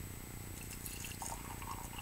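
Tea pouring from a teapot into a mug, a faint trickle of liquid.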